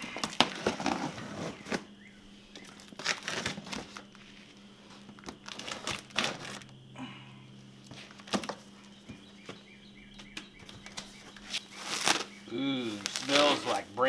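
Cardboard box being slit open along its taped seam with a knife and its flaps pulled back: a run of irregular scrapes, crackles and crinkles, with plastic packing wrap rustling near the end.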